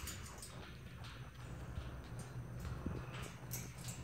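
Faint scattered taps and clicks of corellas' beaks and feet on the metal bars of a wire cage as they climb, over a low steady rumble.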